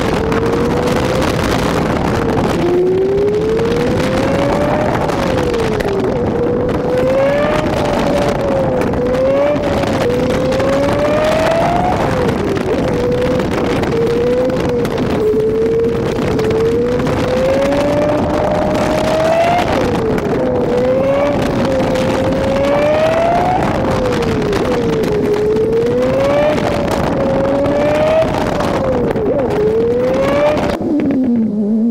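A car engine accelerating and easing off over and over, its pitch climbing for a second or two and then falling back, over steady road and wind noise.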